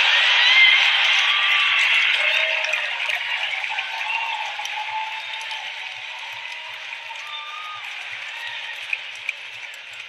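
Large theatre audience applauding and cheering, with single shouts rising above the crowd. It is loudest about half a second in and slowly dies down over the following seconds.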